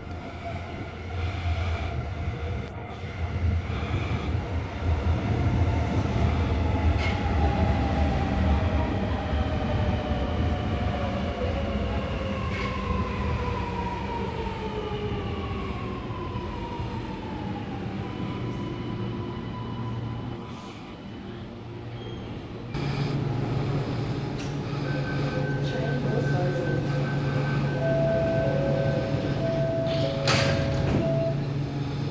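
Sydney Metro Alstom Metropolis driverless train pulling into the platform and braking: its motor whine glides steadily down in pitch as it slows. After it stops, a steady hum is joined by short repeated beeping tones near the end as the doors get ready to open.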